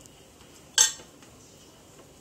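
Metal kitchenware clinking: one sharp metallic clink with a short ring just under a second in.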